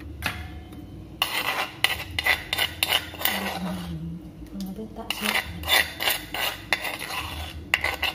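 Metal spoon scraping a wet chili sauce out of an earthenware bowl and clinking against a stainless steel bowl: repeated scrapes and taps in two spells, with a last tap near the end.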